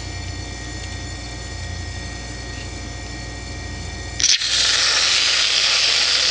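Aerosol can of whipped cream spraying: a loud, even hiss starts about four seconds in and runs for about two seconds as the cream is dispensed onto a mug of hot chocolate. Before it there is only a low steady background hum.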